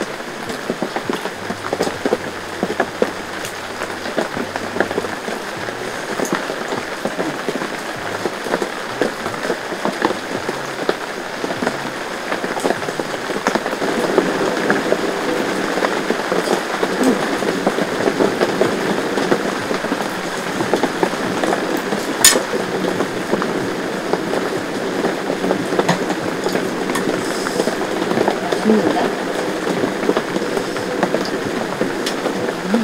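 Heavy rain falling steadily on the fabric of an inflatable air shelter tent, heard from inside as a dense, unbroken patter. A single sharp click cuts through about 22 seconds in.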